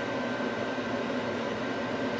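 Steady hum and hiss of room noise, with a faint high steady tone running through it.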